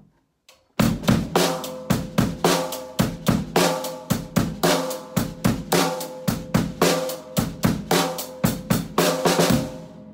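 Drum kit playing a basic rock groove: bass drum and snare with a cymbal keeping time in a steady, even beat. It starts about a second in and stops just before the end.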